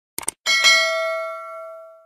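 Subscribe-animation sound effect: two quick clicks, then a bell chime that rings out and fades over about a second and a half.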